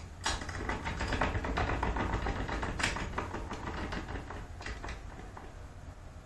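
Rapid mechanical clicking and rattling from the cord-and-scale rig of a tillering tree as the string of a heavy 85 lb horn-and-sinew Turkish bow is pulled down to draw it. The clicking thins out over the last second or two.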